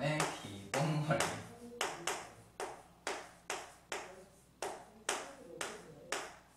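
Chalk on a chalkboard while a line of handwriting is written: a sharp tap of the chalk on the board about twice a second, each stroke trailing off briefly.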